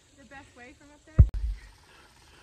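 Faint, distant voices, then a loud, short low thump from the phone being handled about a second in, with a sharp click as the sound cuts.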